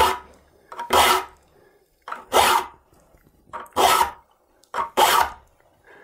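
A saw file stroked by hand across the steel teeth of a crosscut hand saw, sharpening the teeth at a set fleam and rake. About five separate file strokes, a little over a second apart.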